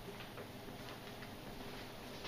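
Quiet room tone with a steady low hum and a few faint, irregular ticks.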